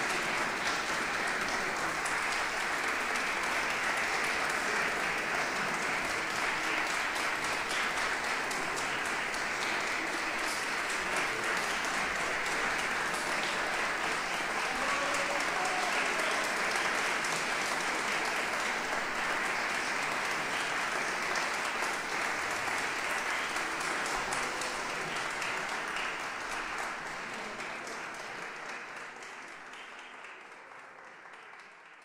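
Audience applauding, dense and steady, then dying away over the last several seconds.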